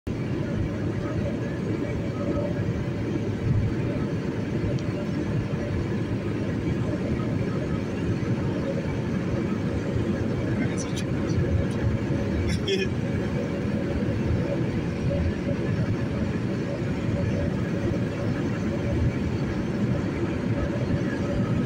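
Car running at about 100 km/h, heard from inside the cabin: steady road and engine noise with a low rumble and a faint steady hum. A couple of brief clicks come about eleven and twelve and a half seconds in.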